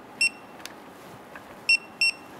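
A torque wrench on a brake caliper bolt beeping as the bolt is tightened to 23 foot-pounds, the beep signalling that the set torque is reached. There is one short, high beep just after the start and another about a second and a half later, near the end, with a faint click between them.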